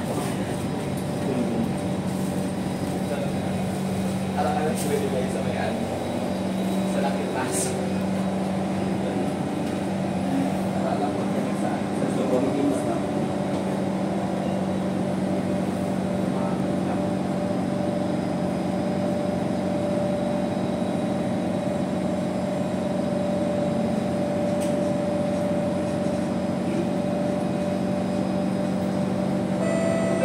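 Steady hum of a Singapore MRT C151 train standing at an underground platform with its doors open, with passengers' voices and a few clicks and knocks in the first half.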